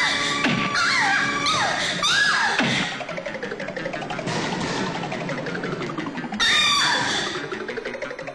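Dramatic film background music with swooping pitch glides in the first three seconds, quieter in the middle, and a sudden loud burst about six and a half seconds in.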